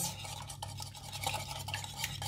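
Small wire whisk stirring kefir, egg, sugar and salt in a ceramic bowl to dissolve the sugar and salt, the wires clicking lightly and irregularly against the bowl.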